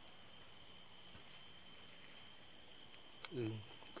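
Faint chorus of crickets at night: a steady high trill, with a rapid, even pulsing higher still.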